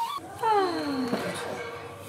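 A young child's drawn-out vocal call, a single whine falling steadily in pitch.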